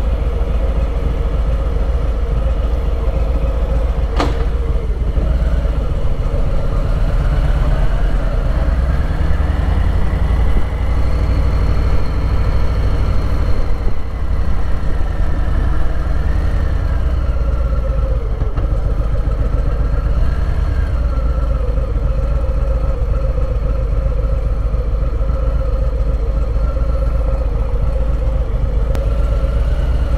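2019 Harley-Davidson Low Rider's V-twin engine running at low speed, with a strong steady rumble. About a third of the way in its pitch rises as the bike speeds up, then it eases off again. There is a single sharp click about four seconds in.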